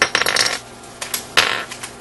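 Plastic Rubik's cube pieces clicking and clattering as the top-layer edge pieces are pried out of a 3x3x3 cube. There is a quick run of clicks in the first half second, then a sharper clatter about a second and a half in.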